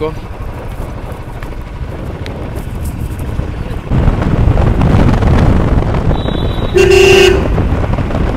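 Royal Enfield Classic 350's single-cylinder engine running as the bike rides along, with road noise, getting louder about halfway through. Near the end a vehicle horn honks once, for about half a second.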